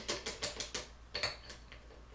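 Metal spoon clicking and scraping against a ceramic fondue pot while Nutella is knocked off it into melting chocolate: a quick run of light taps, most of them in the first second.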